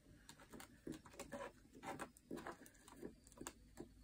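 Faint, irregular light taps and rustles, a few a second, from a paper booklet and pen being handled.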